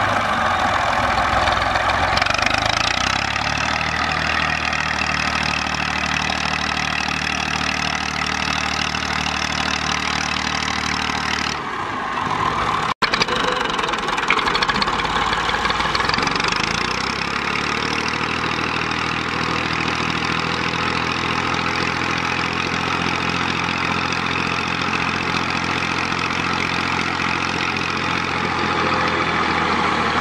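Massey Ferguson tractor's diesel engine running steadily under load as it tows a sand-laden trolley through soft wet sand, the rear wheels digging in. The sound breaks off for an instant about halfway through, then the engine continues.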